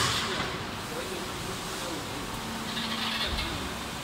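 Injection moulding machine closing its 24-cavity preform mould, with steady machine noise throughout. A steady low tone comes in about halfway, and a short hiss comes near three seconds in.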